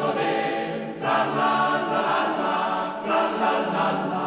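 Mountain-song choir singing a cappella in several-part harmony, with new phrases starting about a second in and again near the three-second mark.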